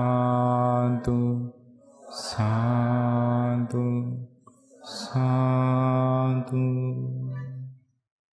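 Buddhist devotional chanting: three long drawn-out vocal phrases on a steady pitch, each opening with a hiss, the last dying away just before the end.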